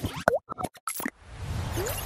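Cartoon-style sound effects for an animated logo outro: a quick run of pops and plops in the first second, one with a sliding 'bloop' pitch. About a second in, a noisy whoosh swells up.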